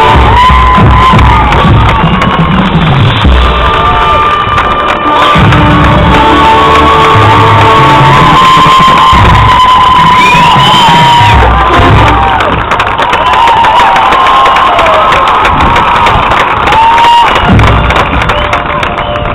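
Marching band playing, with sustained brass and drum notes, while a crowd cheers and whoops over it. The sound is very loud throughout.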